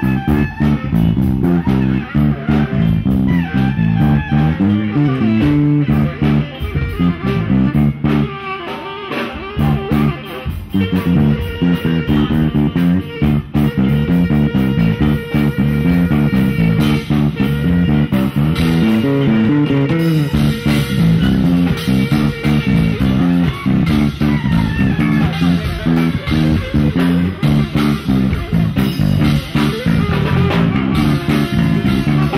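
A live band playing, led by a prominent electric bass line with a tenor saxophone over it. The music eases off briefly about eight seconds in, and a long held note runs through the middle of the passage.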